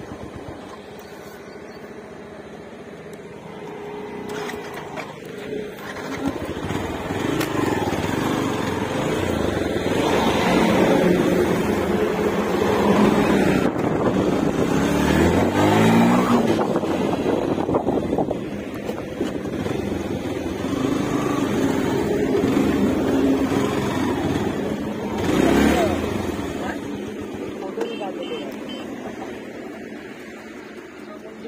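Motorcycle engine running under way, getting louder from about four seconds in, with a revving rise in pitch around the middle and a louder surge near the end.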